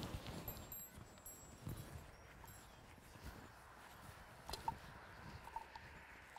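Faint garden ambience: soft handling noises from wet wool skeins being hung on a washing line, with a few short high chirps.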